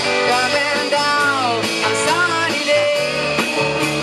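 Live rock band playing, with guitar and drums, and a sliding melody line about one to two seconds in.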